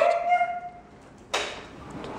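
A dog's high, steady whine that fades out within the first second, then a sudden short rush of noise a little past halfway that dies away quickly.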